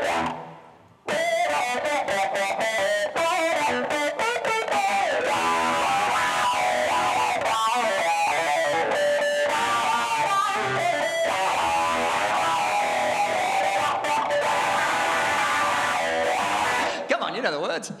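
Small Fernandes electric guitar played loud in a fast rock lead, with string bends gliding the pitch up and down. It drops out briefly just after the start, then plays on and stops about a second before the end, when laughter comes in.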